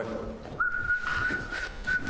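A man whistling one long, steady note that begins about half a second in.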